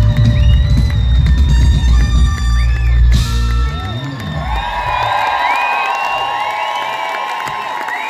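Live pop-soul band with drums, bass, electric guitar and saxophone playing loudly through the venue PA, breaking off abruptly about three seconds in. After that the audience cheers and whistles over quieter sustained music.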